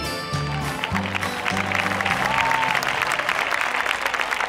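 Audience applauding, starting about half a second in, over the instrumental ending of a ballad's backing track, whose bass notes stop about three seconds in.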